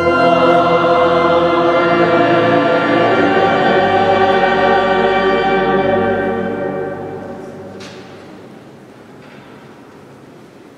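Choir singing a long held chord that fills the reverberant cathedral, fading away from about six seconds in and dying out by about eight seconds.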